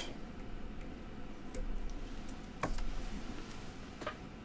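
Small scissors snipping clear double-sided tape: a few faint clicks, the clearest about two-thirds of the way in.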